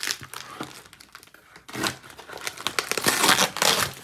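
A taped package being torn open by hand: packaging tearing and crinkling in irregular bursts, loudest in the second half.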